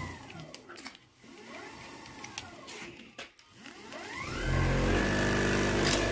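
Car alternator running as an electric motor on 48 volts. Its whine rises and falls in pitch three times, then from about four seconds in it settles into a louder, steady hum. A wooden board is pressed against it as a brake and fails to stop it.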